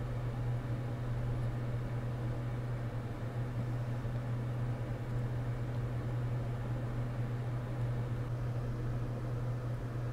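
A steady low hum with an even hiss over it, like a small fan or motor running, unchanging throughout.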